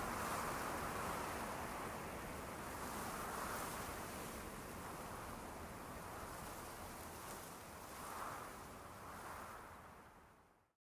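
Soft, even rushing noise, like wind or distant surf, that swells gently a few times and fades away near the end.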